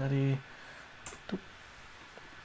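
A man's short, steady-pitched hesitation sound ('uhh') at the start, then a couple of faint clicks a little after a second in.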